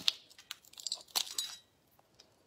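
Langoustine shell cracking and snapping as it is broken apart by hand, a quick run of sharp cracks that stops about a second and a half in.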